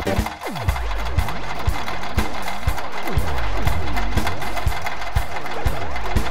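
Electronic instrumental music made in GarageBand: many synthesizer tones glide up and down and cross each other over a held low bass and regular percussive hits. The level dips briefly just after the start.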